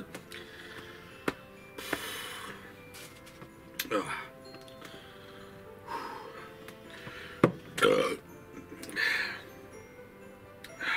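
Soft background music under a man's heavy breathing: several loud exhales and sighs spaced a second or two apart, with a few sharp clicks, the loudest about seven and a half seconds in.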